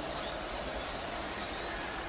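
Steady low background noise, an even hiss with no distinct events.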